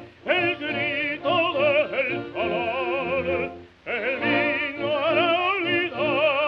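Operatic baritone singing with a fast, wide vibrato, in phrases broken by short pauses just after the start and about two-thirds of the way through. It is an old 1927 recording with a narrow, muffled top end.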